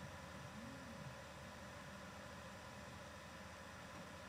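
Faint steady hiss of an open microphone with no one at it, with one faint low tone that rises and falls about half a second in.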